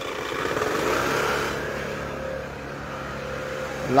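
Motor vehicle engine and road noise, swelling about a second in and then easing off, as the vehicle moves past a line of stopped cars.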